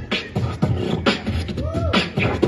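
Beatboxing into a handheld microphone: vocal kick-drum thumps and snare-like clicks in a steady beat of about two strokes a second, with a short rising-and-falling vocal whine near the end.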